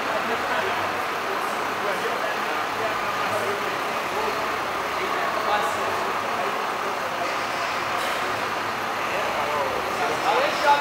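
Indistinct chatter of many voices at a steady level, with a parked bus's engine running underneath.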